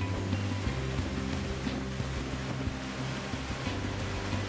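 Water rushing and churning, under background music of sustained low notes.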